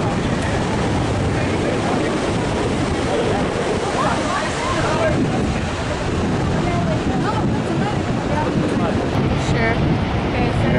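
Steady rushing noise of the Niagara River rapids far below, mixed with wind on the microphone. Faint voices talk in the background.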